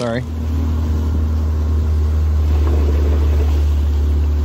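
Boat's outboard motor running steadily as the boat gets under way: a low steady drone that comes in abruptly at the start and grows a little louder over the first couple of seconds.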